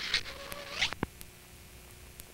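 A telephone receiver being hung up: two short scraping rustles, then one sharp click about a second in, after which it goes quieter.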